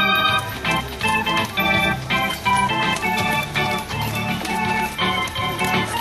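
Organ music playing, with a melody of held notes changing every fraction of a second over sustained low bass notes.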